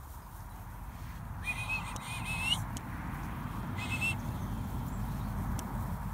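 A handler's whistled commands to a working sheepdog. First comes a warbling high whistle lasting about a second that ends on a rising note, then a short second whistle about a second and a half later. Both sound over a low steady rumble.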